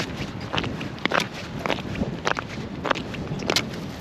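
Footsteps on lake ice, a sharp step about every half second as two people walk across it.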